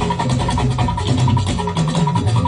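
Live fuji band playing: a dense, fast drum rhythm over a steady bass line.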